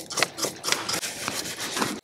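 Nylon-bristle brush scrubbing a bicycle chainring and chain with quick, irregular scratchy strokes.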